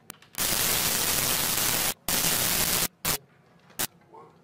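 Loud bursts of static hiss that cut in and out abruptly: a long burst of about a second and a half, a shorter one of under a second, then two brief crackles.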